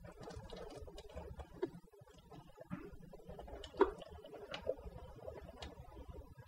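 Faint, scattered clinks and knocks of a cooking pot being tipped at a kitchen sink to drain off its cooking water, with one sharper knock about four seconds in.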